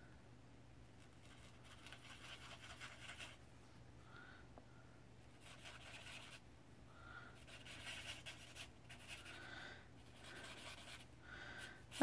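Chisel tip of a Lémouchet alcohol marker scratching faintly across coloring-book paper in four bouts of quick back-and-forth strokes as a background area is filled in.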